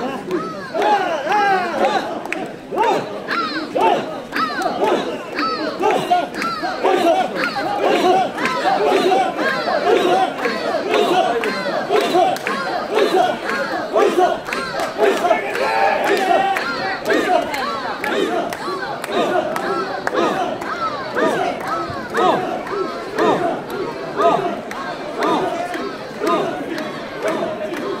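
Many mikoshi bearers chanting and shouting together in a rhythmic call as they carry a portable shrine, with a dense crowd of voices around them.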